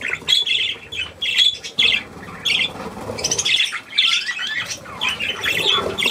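A flock of budgerigars calling in a steady run of short, high chirps, one after another.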